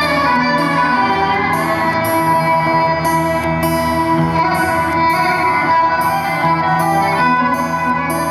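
Live instrumental music from a small band of guitars and fiddle, with long held notes, some sliding in pitch.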